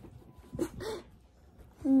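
Small dog giving two short, soft barks in quick succession, just over half a second in.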